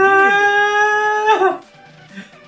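One long held note, rising slightly at first, then held steady and falling away at the end, lasting about a second and a half.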